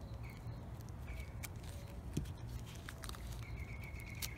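Faint handling sounds: a few small clicks and rustles as gloved hands work a cut-open 18650 cell can and wire cutters, over a low steady hum.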